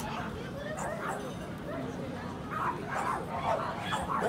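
Dogs barking amid people's chatter, busier in the last second or so.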